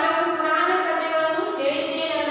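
A woman's voice drawn out in a sing-song way, holding long, steady notes.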